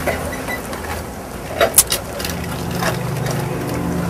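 A jeepney's engine idling: a low steady hum that grows a little stronger about halfway through, with a few short clicks and knocks.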